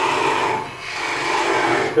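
Parting tool cutting a groove into a spinning wooden cylinder on a lathe: a steady scraping cut that eases briefly about a second in, then continues.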